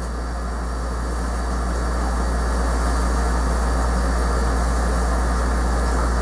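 A steady low hum under an even rushing noise, growing slowly louder over the first three seconds and then holding steady.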